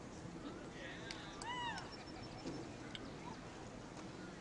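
A single short, high-pitched call that rises and then falls in pitch, lasting under half a second, about a second and a half in, over a low outdoor background.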